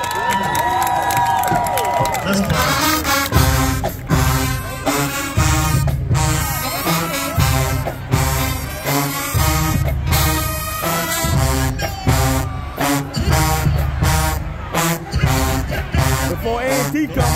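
HBCU-style marching band playing on the field: massed brass over drums, with heavy low bass notes recurring in a steady beat.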